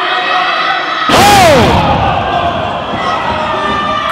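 A wrestler's body slamming onto the wrestling ring mat about a second in, a sudden loud hit with a shout over it, against steady crowd noise.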